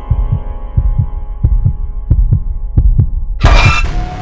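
Horror-trailer sound design: a heartbeat effect in low double thumps, coming faster, over a steady droning chord. It is cut off by a loud, noisy hit about three and a half seconds in.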